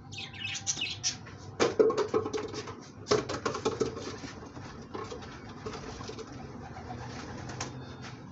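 Pigeon wings flapping in two short flurries, about one and a half and three seconds in, each fading within a second.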